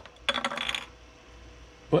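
A hollow 3D-printed plastic hex nut clattering, a quick run of hard clicks with a slight ring lasting about half a second.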